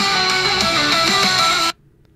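AI-generated hard rock song from Suno: a shredding electric guitar lead with sustained, held notes, which cuts off suddenly near the end.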